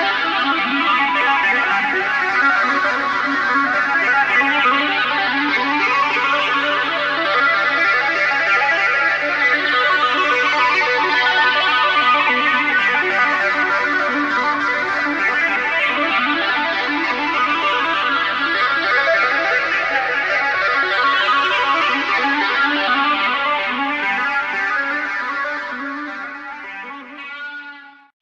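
Electric guitar playing fast, flowing runs of notes tapped on the fretboard with both hands, through an effect that sweeps up and down every few seconds. The music fades out over the last couple of seconds.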